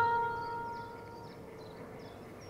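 Acoustic guitar chord from background music ringing out and fading away over the first second or so. Faint high bird chirps sound in the quiet that follows.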